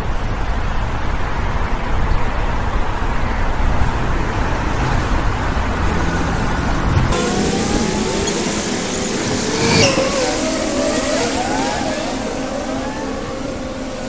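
Steady road traffic noise from cars on a busy city street. About halfway through the sound changes abruptly, turning brighter, with several short rising and falling tones.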